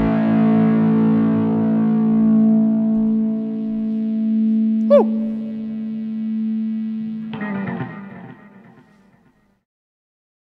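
Distorted electric guitar through effects holding a final chord as a song ends, with a quick downward pitch dive about five seconds in. A short scratchy strum follows just after seven seconds, and the sound dies away to silence before the end.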